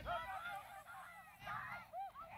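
Geese honking: many short, overlapping calls, loudest just after the start and again about a second and a half in.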